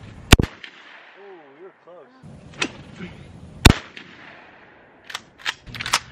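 Two shotgun shots about three seconds apart, each a single sharp bang that dies away quickly, fired at thrown clay pigeons. A few light clicks follow near the end.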